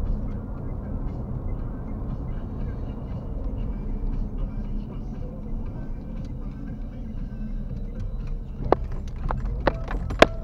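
Steady low road and engine rumble inside a moving car, picked up by a dashboard camera. Near the end come a few sharp clicks or knocks.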